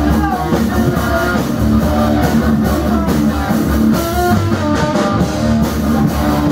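A rock band playing live: electric guitar, bass guitar and drum kit together, loud and steady.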